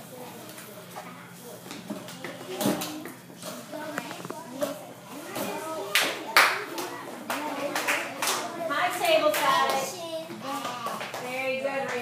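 Children clapping their hands a few times, each child's claps followed by a child's voice saying a word, in turns.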